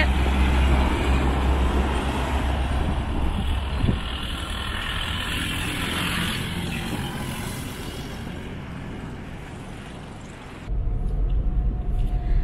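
A truck passing close by, its engine and tyre noise loud at first and fading steadily as it drives away over about ten seconds, with one brief knock about four seconds in. Near the end the sound switches abruptly to the low, steady rumble of a moving car heard from inside the cabin.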